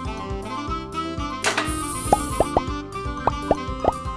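Light cartoon background music with a run of quick, rising 'plop' sound effects in the second half, and a brief hiss about a second and a half in.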